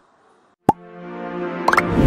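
Near silence, then about two-thirds of a second in a sharp hit opens a broadcaster's outro jingle: a held chord that swells steadily louder, with a quick rising sweep near the end.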